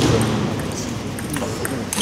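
Table tennis ball in a fast doubles rally: sharp clicks as it is struck by the rubber bats and bounces on the table, several hits in quick succession.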